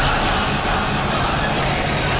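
Film-trailer score and sound design: a dense, steady wash of sound with a few low held tones underneath.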